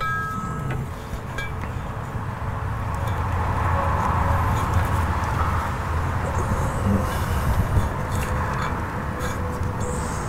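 A low mechanical rumble with a hiss over it, swelling to its loudest about four seconds in and then easing off a little.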